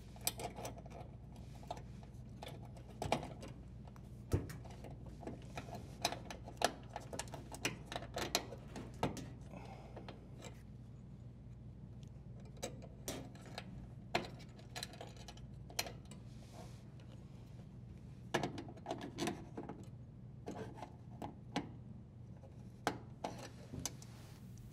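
Scattered small clicks and rustles from the hand-threading of a strain relief nut onto a dishwasher's metal junction box, with the power cord wires being handled against the sheet metal.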